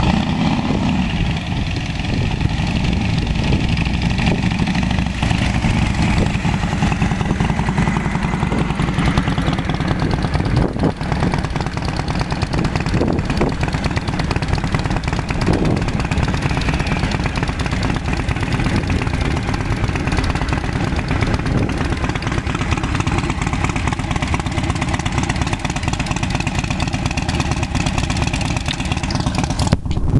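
Motorcycle engines running steadily and loudly as a group of cruiser and touring motorcycles pull away and ride past one by one.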